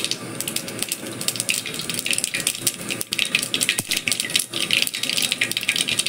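Mustard seeds spluttering and popping in hot oil in a wide metal pan: a dense, irregular crackle of many sharp pops a second. This is the tempering stage, and it shows the oil is hot enough for the seeds to burst.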